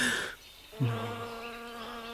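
A buzzing insect starts just under a second in and holds one steady, even pitch.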